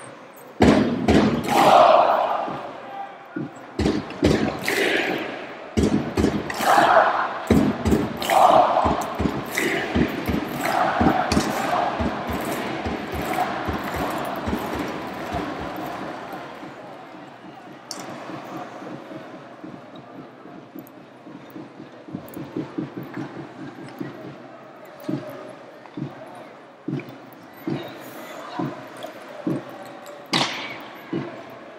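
Live ice hockey arena sound: a crowd shouting and cheering, with sharp clacks of sticks and puck against the ice and boards. It is loudest in the first half, then quieter with a run of evenly spaced knocks near the end.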